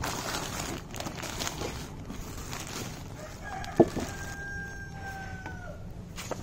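Plastic bag rustling as food scraps are handled, then a rooster crowing: one long call held for about two and a half seconds that drops in pitch at the end. A single sharp knock about four seconds in is the loudest sound.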